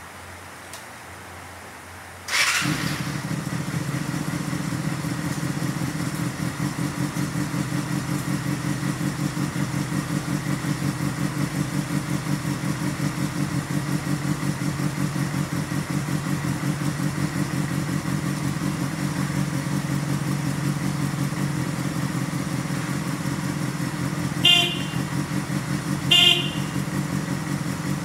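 Kawasaki Balius 250cc inline-four motorcycle engine started about two seconds in, catching at once and then idling steadily with an even pulse. Two short horn beeps sound near the end.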